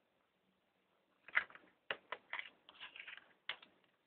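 Utility knife blade cutting through a craft foam (EVA) sheet along a ruler: a string of short, irregular scratchy cuts, starting a little over a second in and lasting about two and a half seconds.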